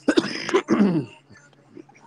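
A man clearing his throat: two rough pushes within the first second, the second dropping in pitch.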